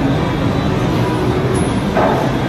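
Steady, loud background noise with no distinct event in it.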